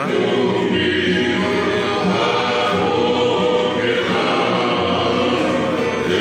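A group of men singing a Tongan hiva kakala song together in harmony, holding long notes, with acoustic guitar accompaniment.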